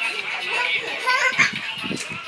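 A toddler's voice, chattering and laughing at play, with other voices in the room.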